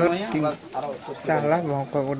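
People speaking in conversation.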